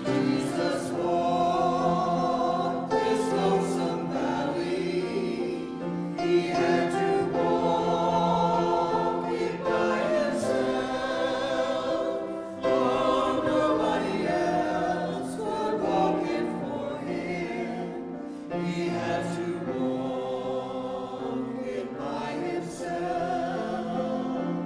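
A small mixed choir of men's and women's voices singing, accompanied on a grand piano.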